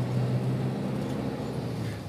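Steady engine and road noise heard from inside a moving car's cabin: a low, even hum over a soft haze, easing slightly toward the end.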